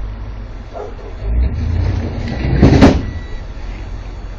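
Delivery truck's engine running as the truck pulls away, the rumble swelling about a second in, with one loud, brief burst of sound near three quarters of the way through.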